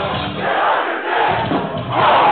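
Concert crowd shouting and cheering through a short gap in the band's loud playing, where the bass and drums drop out for about a second.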